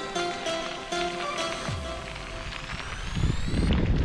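Background music with held notes and a rising sweep that builds over the second half and cuts off suddenly just before the end.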